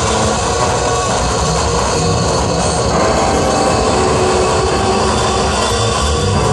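Loud live experimental noise music: a dense, continuous wall of electronic drone and amplified guitar with a few held tones and no clear beat.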